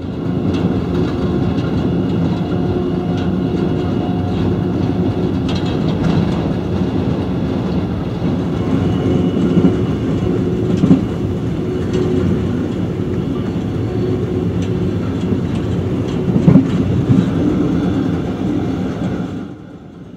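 Car-carrying train running at speed, heard from inside a car riding on one of its wagons: a steady rumble of wheels on rails, with a few sharp knocks from the track.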